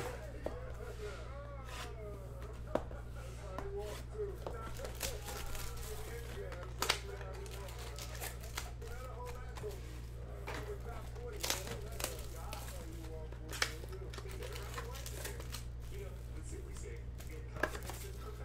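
Foil wax packs of baseball cards being taken out of a hobby box and stacked on a table: soft crinkling of the wrappers, with a few sharp clicks spread through as packs are set down. A steady low hum and faint voices lie underneath.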